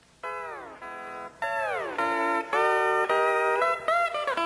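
Steel guitar playing held chords that slide down in pitch, several bends in a row, starting about a quarter second in.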